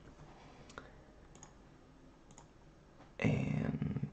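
A few faint clicks in a quiet room, then near the end a man's drawn-out voiced hesitation sound.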